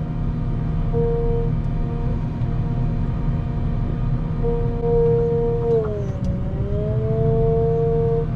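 Wheel loader running under load, heard from the cab: a steady engine drone with a whine on top. The whine drops in pitch about six seconds in, then climbs back.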